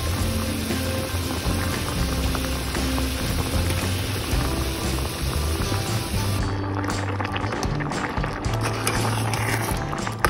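Background music over a pot of water at a hard rolling boil with tapioca pearls in it; the bubbling noise stops about six and a half seconds in, leaving the music.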